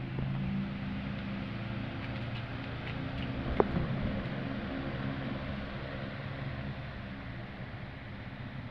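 Steady low machine hum over a soft hiss, with a single sharp click about three and a half seconds in.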